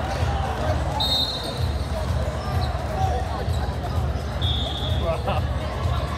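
Volleyball hall din: balls thumping on the courts, sneakers squeaking sharply on the court floor twice, and people's voices calling out.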